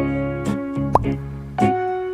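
Light background music with held, pitched instrument notes changing a few times. About halfway through comes one short rising 'plop' sound.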